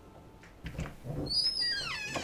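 A door creaking open: a hinge squeak falling in pitch over about half a second, after a few soft thumps.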